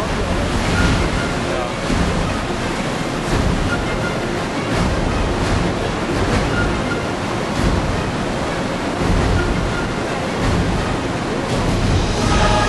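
Steady rushing of the Reka river, the underground river flowing through the cave's canyon, swelling and easing slightly.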